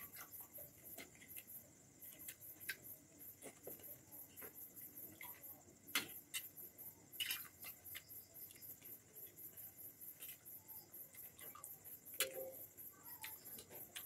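Crickets chirping faintly in a steady, high-pitched pulse of about four chirps a second. Now and then there is a soft click or crunch, the strongest about six seconds in and again near twelve seconds.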